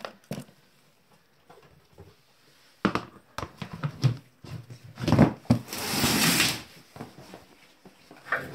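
Plastic storage tub and its lid being handled: a few sharp knocks and clicks about three seconds in, then a rough sliding scrape lasting about a second and a half.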